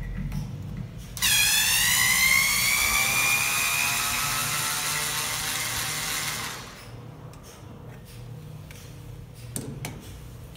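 Small cordless electric screwdriver running for about five seconds, turning the screw at the base of a hand-operated pellet press to release the pellet. Its motor whine drops in pitch as it starts, then rises slowly until it stops. A few faint clicks follow near the end.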